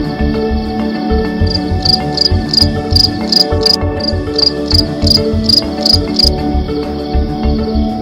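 A cricket chirping in evenly spaced high pulses, about three a second, from about a second and a half in until a little past six seconds, over steady background music.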